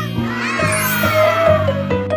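Background music with a steady beat of low notes, overlaid by a pitched sound effect that slides down in pitch over about a second and a half.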